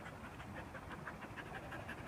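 A German Shepherd-type dog panting softly and quickly, about four to five breaths a second.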